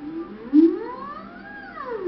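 A woman humming with a whimpering 'sad puppy dog' quality in a voice exercise. The hum starts about half a second in, slides steadily up from low to high, then drops quickly back down near the end.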